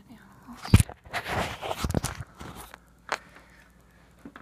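Handling noise on the phone: a sharp thump under a second in, then about a second and a half of rustling and knocking, and a single click about three seconds in.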